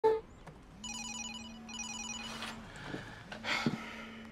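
Mobile phone ringing: two bursts of a warbling electronic ringtone over a low steady buzz, the buzz starting again near the end. A short sharp sound at the very start is the loudest moment.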